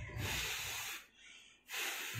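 Two forceful breaths blown out through an N95-style face mask, a breathy rush of air about a second long each, the second starting near the end.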